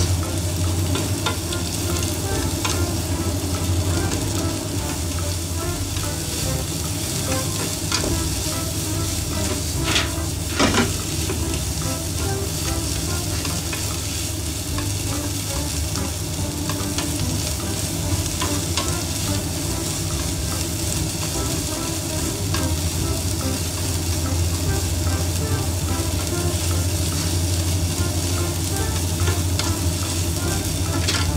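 Sliced onion and red bell pepper sizzling in a nonstick frying pan as they are stirred and tossed with chopsticks, the chopsticks now and then clicking against the pan, most sharply about ten seconds in. A steady low hum runs underneath.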